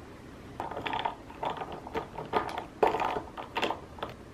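Metal straw stirring ice cubes in a glass mug of iced drink: a quick run of clinks and rattles of ice and metal against glass, starting about half a second in and stopping just before the end.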